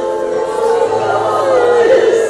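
A congregation of women's voices sounding together in worship, many sustained pitches overlapping over a steady held tone.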